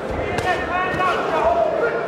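Boxing gloves thudding on bodies as two boxers throw short punches in a clinch on the ropes, with men's voices calling out from ringside.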